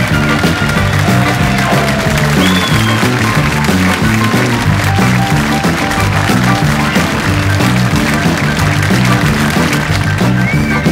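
Live country music, an instrumental break with piano played over a steady, even rhythm.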